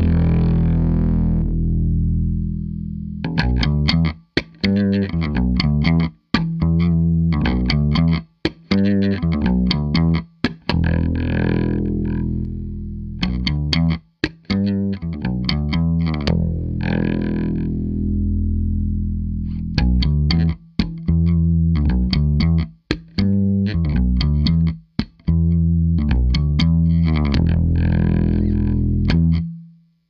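Electric bass, a Fender Precision Bass Special, played through the Barber Linden Equalizer pedal, which is switched on, and a Fender Princeton Reverb amp with an extra 1x12 cabinet. It plays a repeated riff broken by short stops.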